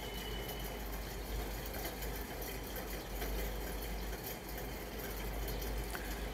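Steady low background hum and hiss, room noise with no distinct event.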